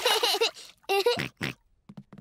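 A cartoon piglet's high voice making short playful vocal sounds while playing in the bath: two brief calls and a shorter third one about a second and a half in.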